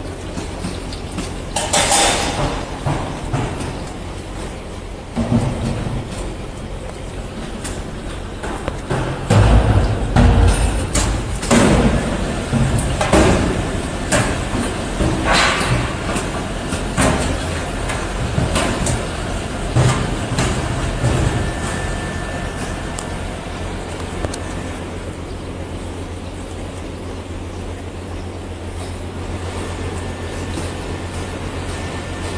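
Cable extrusion machinery running with a steady low hum, with a series of metallic knocks and clanks from about two seconds in until about twenty-two seconds in, after which only the hum remains.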